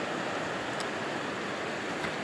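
A river rushing over a rocky bed: a steady, even wash of flowing water.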